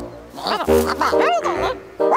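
Cartoon creatures' high-pitched wordless vocal sounds, starting about half a second in, over background music.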